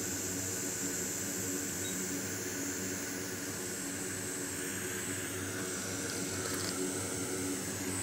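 Steady background hum with a faint high hiss: constant room noise from running equipment, with no distinct event.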